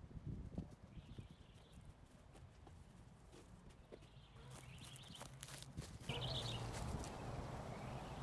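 Faint outdoor background with scattered light clicks and taps, which grows louder about six seconds in.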